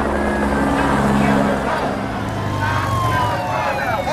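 A siren sliding down in pitch over a low, steady engine drone, with voices starting near the end.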